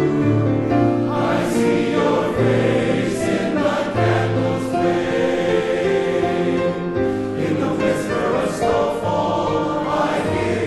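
Men's chorus singing a slow song in harmony, holding long chords that change every second or so. Sharp 's' sounds from the sung words come through a few times.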